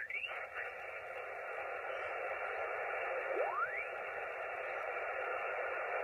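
Yaesu FT-897 transceiver receiving 40 m lower sideband while its main tuning dial is turned: steady band hiss, with a garbled, pitch-shifted SSB voice sliding up and away at the start. About three and a half seconds in, a single whistle sweeps quickly upward in pitch as the dial passes a signal.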